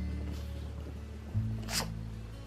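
Background music with held low notes that change a little over a second in; near the end, one short rasping sound.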